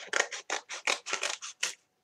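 Scissors snipping through a sheet of glitter material in a quick run of short cuts, about six a second, stopping just before the end.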